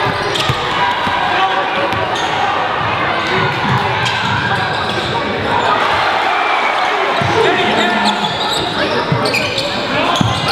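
Basketball being dribbled on a hardwood gym court, with indistinct crowd and player voices echoing in the large hall.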